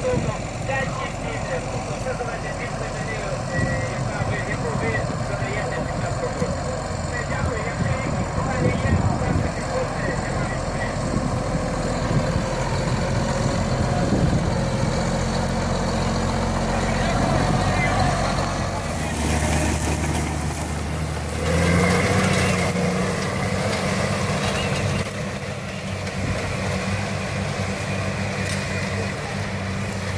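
Case Magnum 310 tractor's six-cylinder diesel engine running steadily. About two-thirds through, its note turns into a steadier, even hum.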